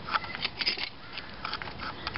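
Light, irregular clicks and scrapes from a bench vise being screwed in to press a homemade wooden fork onto a valve spring in a small motorcycle cylinder head, the start of compressing the spring.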